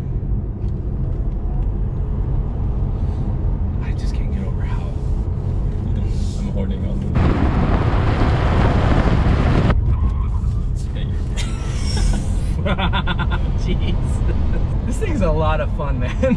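Tesla Model 3 Performance on the move: a steady low road and tyre rumble with no engine note. About seven seconds in, a louder rush of wind and tyre noise close to the front wheel lasts a couple of seconds, then the rumble goes on.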